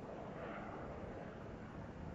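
Faint, steady low rumbling noise with some hiss, swelling slightly about half a second in.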